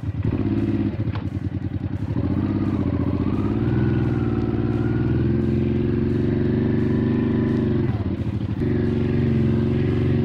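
Honda XL600V Transalp's V-twin engine running under way. It pulls at low revs with a short break about a second in, climbs in pitch from about two seconds and holds steady, then dips briefly near the end before picking up again.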